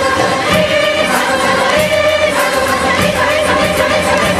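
Indian classical orchestra with a choir of voices holding a long sung melody over sitars, with repeated percussion strokes throughout.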